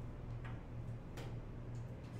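A steady low hum with a few faint, scattered clicks and taps.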